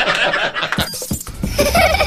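Laughter that stops about a second in.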